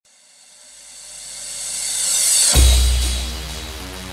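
Electronic intro music: a rising noise sweep builds for about two and a half seconds, then a deep bass hit lands and slowly fades under sustained low notes.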